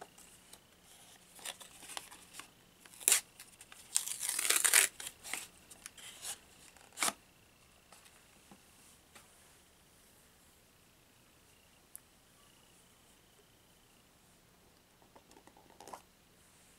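Product packaging being torn and crinkled open by hand: a run of short rips in the first seven seconds, the longest and loudest about four seconds in, then one small click near the twelve-second mark.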